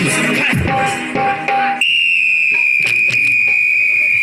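A shrill, steady high-pitched tone over the stage PA starts suddenly about two seconds in and sags very slightly in pitch. It is preceded by a shorter, lower steady tone, and scattered drum-like hits sound under it.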